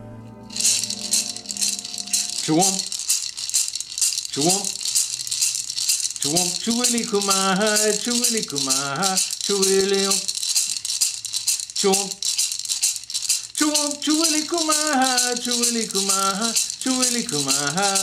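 A handheld gourd rattle shaken continuously in a fast, even rhythm, starting about half a second in. Over it a man sings in phrases, joining a couple of seconds later.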